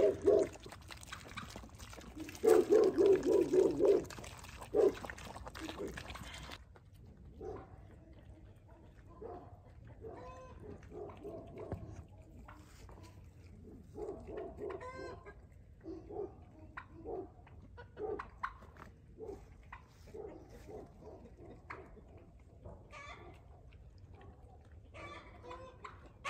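Backyard poultry (chickens, turkeys and guinea fowl) clucking and calling on and off in short, scattered calls. A louder run of rapid animal calls comes about two to four seconds in.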